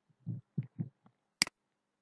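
Three soft, low thumps close together in the first second, then a sharp computer-mouse click about one and a half seconds in.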